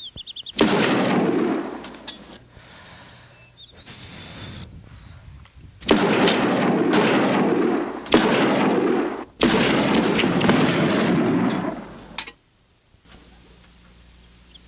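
Four pistol shots, each a sudden blast followed by a long echo lasting a second or more: one about half a second in, then three more from about six seconds in, the last two close together.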